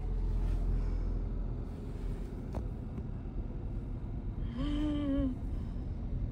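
Steady low rumble of a Vauxhall car being driven, heard from inside the cabin. A person says a single word near the end.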